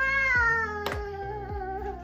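A single long, high cry held for about two seconds, its pitch sliding slowly downward, with a sharp click about a second in.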